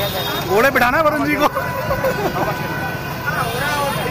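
Busy street crowd: voices talking and calling out over a steady background of traffic noise from motorcycles and other vehicles.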